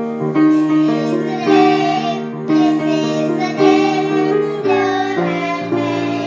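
Two young girls singing together, accompanied on a grand piano; their voices come in about half a second in over the piano.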